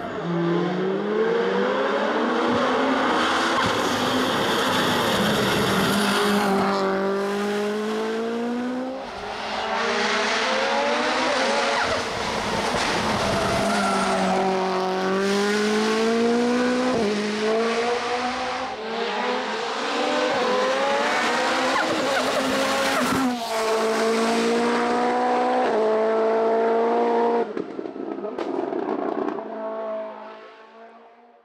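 Mitsubishi Lancer Evo IX hill-climb car's turbocharged 2.0-litre four-cylinder engine under hard acceleration. Its pitch climbs and drops again and again as it goes through the gear changes, with a sharp crack about three-quarters of the way through. The sound fades as the car goes away near the end.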